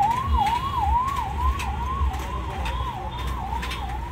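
A siren-like warbling tone that sweeps up and drops back about twice a second, growing fainter toward the end, over a steady low rumble with scattered crackles.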